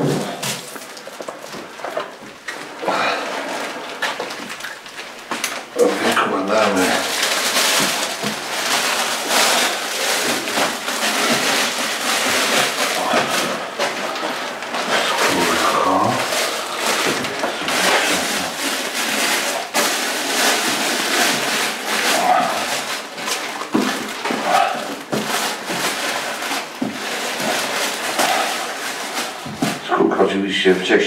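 Continuous rustling and handling noise, most of it from about six seconds in, with indistinct voices now and then in a small room.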